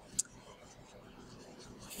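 Paint brush bristles scrubbing around in dish soap and a little water in a shallow lid, a faint soft scratching and swishing, with a small click about a quarter of a second in.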